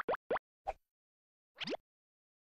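Cartoon 'bloop' pop sound effects from an animated logo graphic: four short upward-sliding blips in quick succession, then one longer rising sweep near the end.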